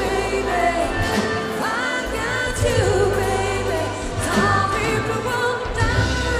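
Live pop band performing: several vocalists singing together over electric bass, drums and electric guitar.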